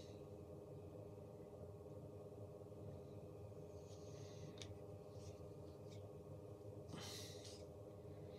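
Near silence: room tone with a steady low hum, and a few faint short hissy sounds such as a breath or handling noise, the clearest about seven seconds in.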